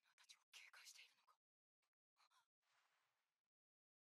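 Very faint speech, barely above silence, with a short soft hiss a little after two and a half seconds.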